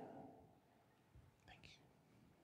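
Near silence: room tone in a church, with the last of a spoken "Amen" fading at the start and a couple of faint, brief hiss-like sounds about a second and a half in.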